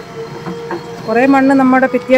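JCB backhoe loader's diesel engine running as it digs soil, with a steady hum throughout.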